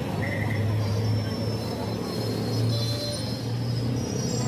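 A steady low mechanical hum, with a short pulsed beep about half a second in.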